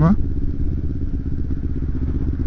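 Kawasaki Ninja 250R's parallel-twin engine running steadily at cruising speed, a low rumble picked up by a helmet camera while riding.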